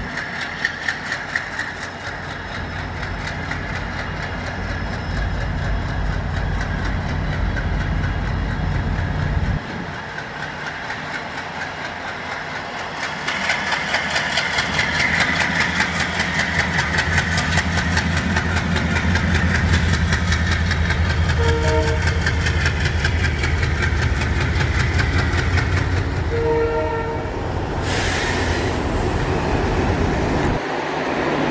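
ALCO WDG-3A diesel locomotive's 16-cylinder engine chugging under load as it pulls an express train away, its exhaust beat growing louder from about halfway through. Two short horn blasts come near the end, followed by a brief hiss.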